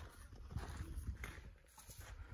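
Footsteps scuffing and tapping on bare rock, with a low, uneven rumble of wind on the microphone.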